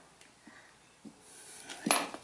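Hands handling a wheel hub bearing assembly and grease gun: a few faint clicks, then a single sharp metal click near the end.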